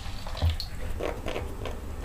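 Warm water poured from a plastic dipper onto wet, soapy fabric, a steady splashing trickle, with a soft thump about half a second in.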